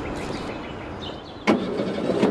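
Steady outdoor ambience with faint bird chirps. About one and a half seconds in, there is a sudden loud sound of a car door being opened.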